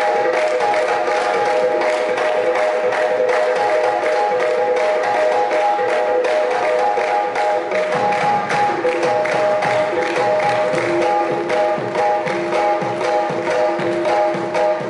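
Qawwali ensemble playing: harmonium holding steady chords over a fast, even beat of hand clapping. About eight seconds in, a hand drum comes in more strongly underneath.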